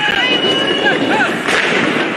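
A single loud bang about one and a half seconds in, from a police crowd-control grenade, over a crowd's shouting.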